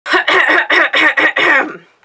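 A woman's voice in a quick, even run of about seven short, breathy bursts, about four a second, fading out near the end.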